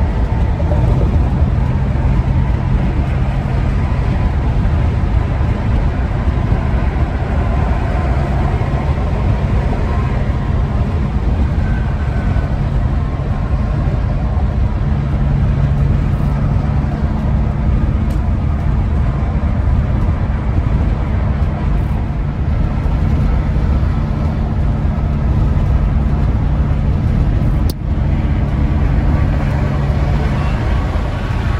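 Inside the cab of a 2001 Ford E-350 camper van cruising on a highway: a steady low engine drone over continuous tyre and road noise. The sound dips briefly about two seconds before the end.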